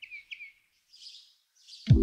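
A bird's rapid series of short falling chirps, about six a second, trailing off in a break in the music. Two short soft hisses follow, and the lo-fi beat comes back near the end with a deep falling bass hit.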